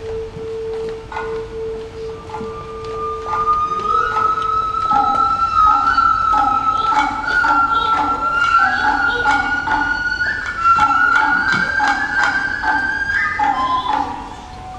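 Japanese bamboo flute playing long held notes: a low steady tone for about five seconds, then a higher note that bends slowly upward, with lower notes pulsing beneath.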